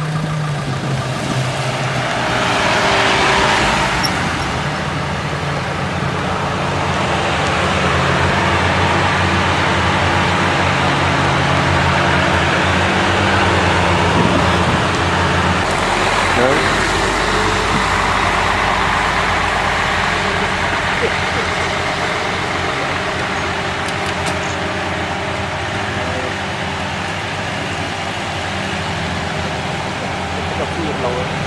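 Car engines running as a convoy of cars moves slowly along a wet road, with people's voices over them. About halfway through, the sound changes.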